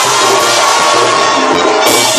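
Live Mexican banda music played loud and without a break, with crowd noise from the audience over it.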